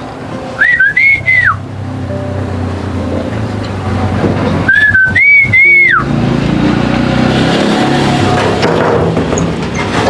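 A person whistling a short calling whistle twice, about four seconds apart; each time the pitch rises, dips, rises higher and then drops away. Soft background music plays underneath.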